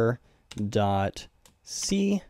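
A few keystrokes on a computer keyboard, typing out a line of code, heard in the gaps of a man's drawn-out speech, which is the loudest sound.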